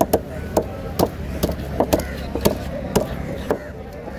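Large knife chopping through an emperor fish on a wooden cutting block, cutting it into steaks: about nine sharp strikes, roughly two a second, landing unevenly.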